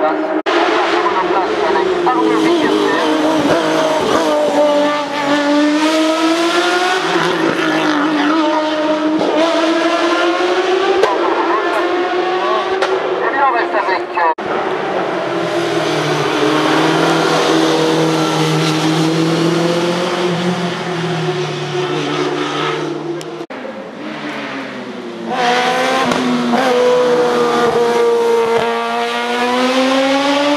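Single-seater hill-climb race cars driving hard through a bend, their engines revving high and dropping again and again as they accelerate and shift gear. The sound breaks off abruptly a few times as one car's run gives way to the next.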